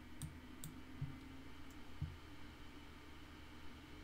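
A few faint, sharp clicks of a computer mouse, about five in the first two seconds, each with a soft thump, over a steady low room hum.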